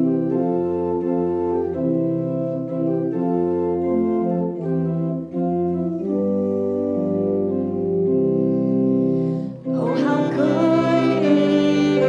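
Church organ and grand piano playing a slow hymn introduction in sustained chords. About ten seconds in, a violin comes in with a wavering melody line over them.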